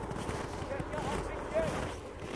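Quiet open-air ambience: a low wind rumble on the microphone, with a few faint, distant voices.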